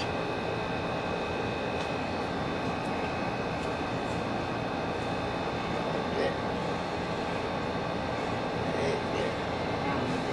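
Steady machine noise: an even hiss with a constant hum and a few faint high whines, with light taps about six and nine seconds in.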